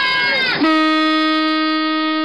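Children shouting a departure call, then about half a second in a diesel railcar's horn (Minami-Aso Railway MT-2000) sounds one long steady blast, the train's departure signal.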